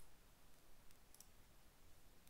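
Near silence with a few faint clicks, a pair of them a little over a second in, as a command is pasted into a computer terminal.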